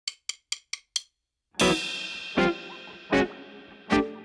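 A drummer's count-in of five quick drumstick clicks, then a short gap. Then the trio comes in together on a loud hit of drums, cymbals, electric guitar and keyboard, with accented band hits about every three-quarters of a second.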